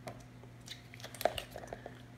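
Gloved hands handling a flexible silicone muffin-tin soap mould, with a few faint, short clicks and soft rubbing sounds in the second half.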